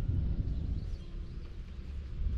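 Low rumble of outdoor wind buffeting a handheld microphone, with no distinct events.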